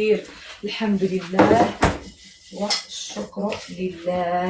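Kitchen dishes and utensils clattering, with one sharp knock a little before halfway, under low murmured speech.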